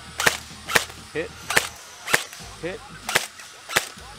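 Airsoft AK rifle shooting at targets: sharp cracks coming in three pairs, the two cracks of each pair about half a second apart.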